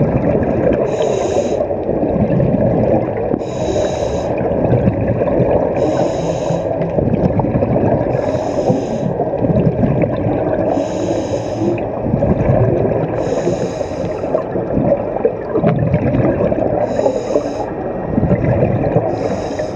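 Scuba regulator breathing underwater: a short hiss of inhalation about every two and a half seconds, with a continuous rumble and gurgle of exhaled bubbles between.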